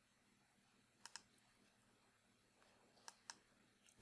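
Faint computer mouse clicks in near silence: two quick pairs of clicks, about a second in and again about three seconds in, as a software tool is opened.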